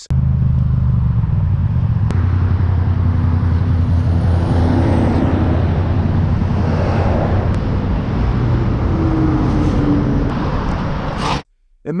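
Motorcycle engine running at a steady speed on the road, with road and wind noise on the onboard camera's microphone; it cuts off suddenly near the end.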